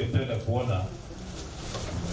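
A man's voice speaking into a microphone, his words not made out, louder in the first second and quieter after.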